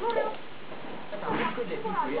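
Voices speaking Romanian in a television programme, with a short noisy burst about a second and a half in.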